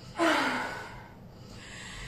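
A woman's audible breath out, a short voiced sigh falling slightly in pitch, about a quarter second in. She is recovering her breath after a back-bending stretch.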